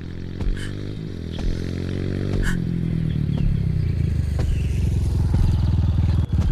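Motorcycle engine running as it approaches, growing steadily louder.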